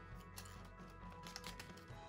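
Quiet background music, with a few faint ticks of the paper-craft dragon being handled.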